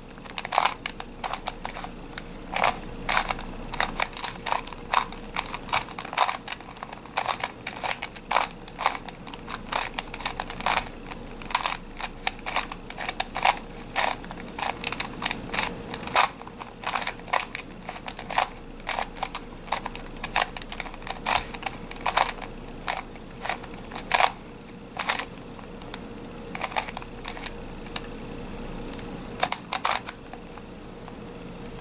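Plastic face-turning octahedron puzzle being turned by hand in quick runs of layer turns, its pieces clicking and clacking irregularly. The clicks thin out near the end.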